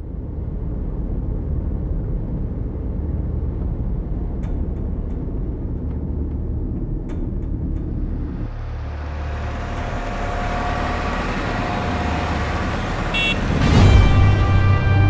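Steady low rumble inside a car cabin. From about ten seconds in, music swells up over it, peaking in a loud hit near the end.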